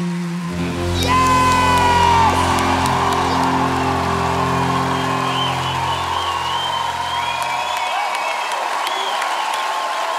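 A live band holds the final chord of a rock ballad while a studio audience cheers and whoops. The chord stops about eight seconds in, and the cheering carries on.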